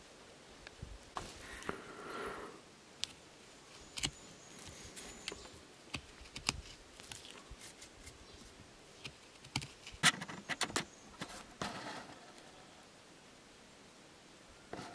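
Knife carving a V-notch into a green branch: scattered small cuts, clicks and scrapes of the blade on the wood, with the loudest cluster about ten seconds in.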